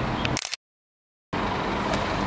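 Steady background noise like road traffic, broken about half a second in by a sudden dropout to dead silence lasting under a second, where the recording was cut, before the noise resumes.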